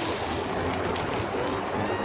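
Sizzling of a thin beef steak just seared in a hot steel frying pan and slid onto a stainless steel tray; the hiss slowly dies down.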